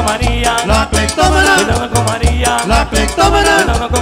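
Live band playing upbeat Salvadoran música campirana, a cumbia-style dance tune with a bass beat pulsing about twice a second under a melodic lead.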